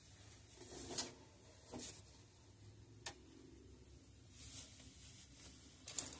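Faint rustling and handling of a synthetic wig being pulled on over the head, in a few short soft bursts, with one sharp click about three seconds in.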